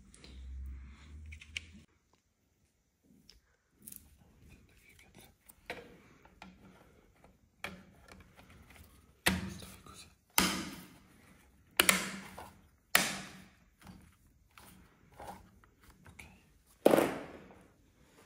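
Hard plastic clicks and knocks as an Avidsen wall thermostat is pushed onto its wall plate and worked on with a screwdriver. There are about a dozen sharp knocks at irregular intervals, loudest in the middle and near the end.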